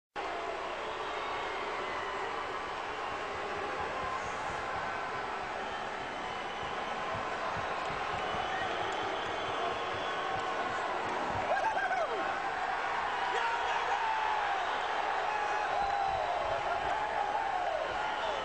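Large arena crowd cheering and shouting in a dense, steady wash of voices, with scattered low thumps.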